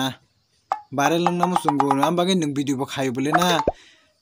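A man talking for about three seconds after a brief pause, with a short click just before his voice starts.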